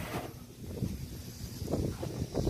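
Quiet outdoor background: a low rumble of wind on the microphone, with a few faint soft sounds.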